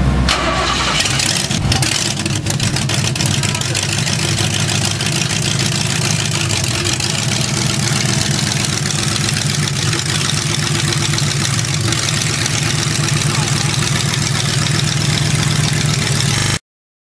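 Engine of an Austin gasser hot rod starting about a second in, then running at a loud, steady idle.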